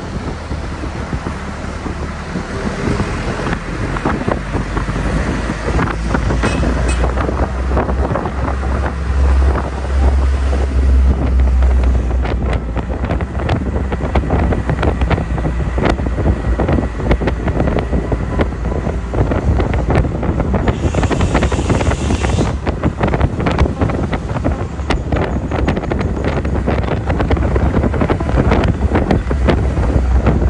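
Heavy wind buffeting the microphone on the roof of a moving Isuzu Elf minibus, over the rumble of the minibus and its tyres on the road. A brief hiss about two-thirds of the way through.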